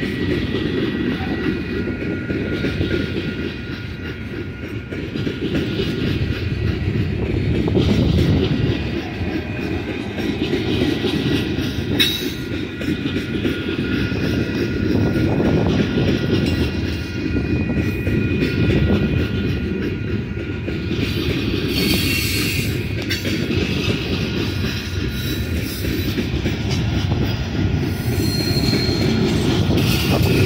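Freight train of coal cars rolling past at speed: a steady rumble of wheels on rail, with brief high wheel squeals a few times in the second half.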